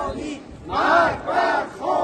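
Protesters chanting a slogan together in loud, drawn-out shouts: two long syllables about a second in, and a third beginning near the end.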